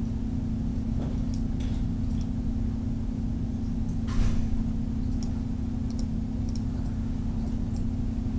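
Steady low hum with room noise, broken by a few faint clicks of a computer mouse as the on-screen sliders are dragged.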